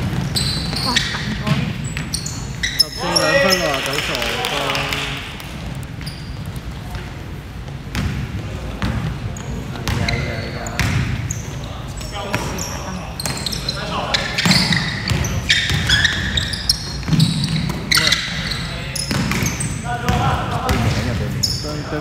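Basketball bouncing on a hardwood gym floor as it is dribbled up the court, with repeated short thuds in a large hall, mixed with players' voices calling out.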